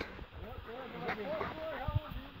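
Faint background voices of men talking at a distance, with a soft knock near the end.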